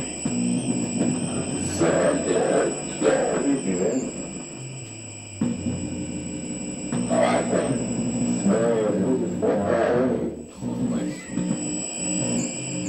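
Music with steady held notes, and a voice over it at times.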